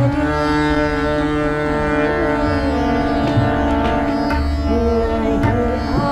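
A woman singing thumri with slow gliding notes, accompanying herself on harmonium, whose reeds hold steady sustained notes under the voice. Tabla strokes, including a few deep bass-drum thumps, keep time beneath.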